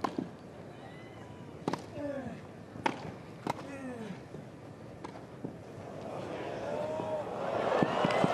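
A tennis rally on a grass court: sharp racket strikes on the ball, about a second or so apart, with a few brief vocal sounds between them. A crowd's rising reaction swells over the last couple of seconds as the point is won with a lob.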